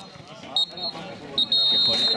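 Referee's whistle: a short blast about half a second in, then a long blast from about one and a half seconds in. The pattern is typical of the full-time whistle ending the match. Faint voices of people around the pitch are heard underneath.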